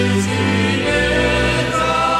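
Choral music: voices holding sustained chords over a low drone, the harmony moving to a new chord about a second in.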